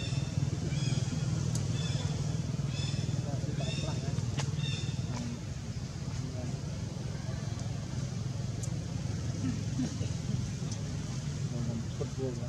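A steady low engine-like hum with faint murmuring, and clusters of short high chirping calls repeated several times during the first five seconds.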